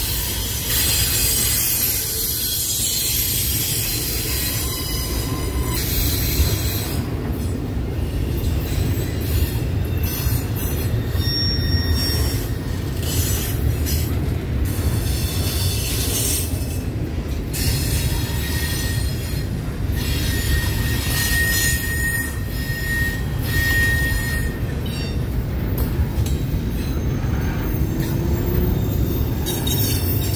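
Double-stack container well cars of a long freight train rolling past: a steady low rumble of steel wheels on rail. Brief high wheel squeals come and go, most clearly around twenty seconds in.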